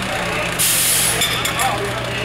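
Fire engine running steadily at the scene, with a sudden loud burst of hiss about half a second in that lasts about half a second and then sputters out in a few short spurts.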